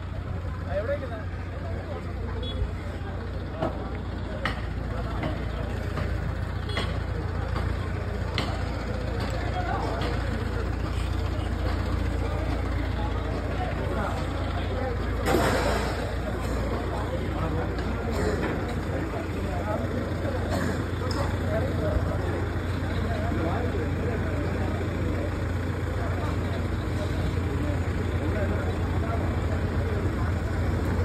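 Many people talking in an open-air crowd over a steady low rumble, with scattered knocks and one brief loud clatter about halfway through.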